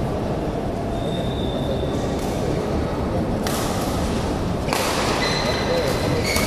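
Badminton doubles rally on an indoor court: shuttlecock hits and short shoe squeaks on the court floor, over a steady rumble of hall noise.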